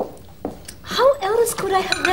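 Cutlery and crockery clinking on a dinner table, a couple of sharp clinks in the first half-second, then a voice starting about a second in.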